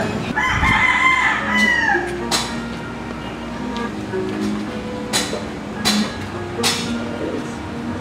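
A rooster crowing once about half a second in: one long call of about a second and a half that falls in pitch at its end. Several sharp clicks follow later.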